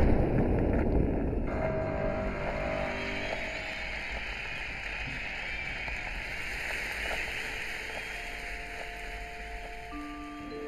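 Tail of a hydrogen-oxygen balloon explosion: the blast rumbles and echoes loudly, fading over the first few seconds, then gives way to a steady rushing noise.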